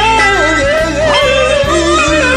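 Music: a wordless vocal line wavering and sliding up and down with vibrato, over a backing track of held chords and bass.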